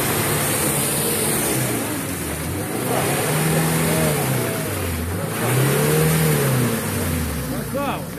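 Mitsubishi Pajero engine revved up and down, twice rising and falling in pitch, over the noise of its wheels churning through deep mud as it struggles bogged down to the axles.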